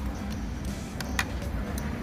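Background music over a steady low rumble, with a couple of sharp clicks about a second in, from a metal fork and spoon being handled against a plastic lunch tray.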